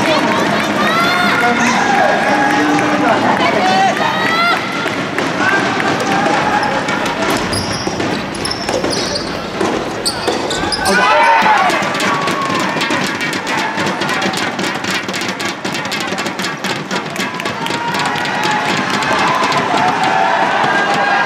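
Shouts and calls from players and spectators echo in a sports hall during a soft tennis point, with sharp impacts of the rubber ball. About halfway through, a dense run of rapid clicks like clapping takes over.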